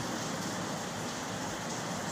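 A steady hiss of background noise without distinct strokes, knocks or tones.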